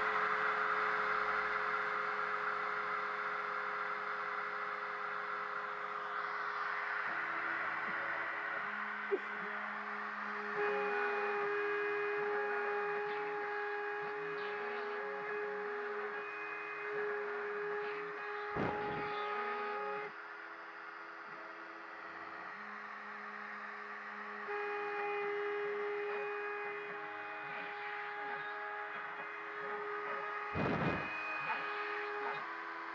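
Kress router spindle on a homemade CNC machine running with a steady high whine as its bit engraves plexiglass, while the stepper motors whine in shifting pitches as the axes move. It goes quieter for a few seconds a little past the middle.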